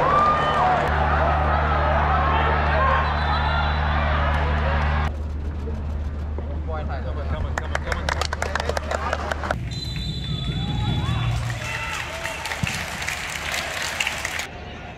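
Crowd noise in stadium stands: many overlapping voices over a low steady hum. After an abrupt cut about five seconds in, quieter open-air sound with a quick run of sharp clicks for a few seconds, then scattered voices.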